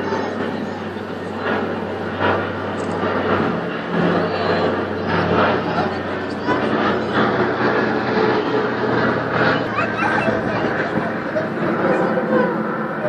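People talking over the steady low drone of a propeller aircraft flying overhead; the drone's pitch shifts about four seconds in.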